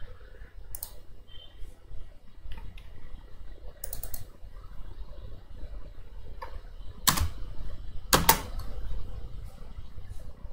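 Sparse, irregular computer keyboard keystrokes and mouse clicks, with two louder clacks about seven and eight seconds in.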